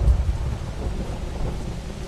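Thunder rumbling and easing off over the first second, under a heavy downpour of rain that hisses steadily.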